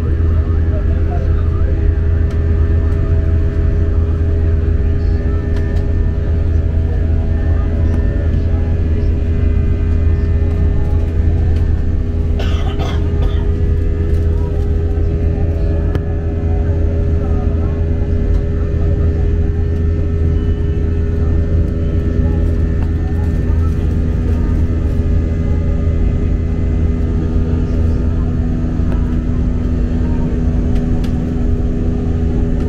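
Airbus A320-family airliner cabin noise heard from a window seat: the steady drone of the jet engines and airflow in the climb, with a deep hum and a few steady engine tones running through it. A brief knock or clatter about twelve seconds in.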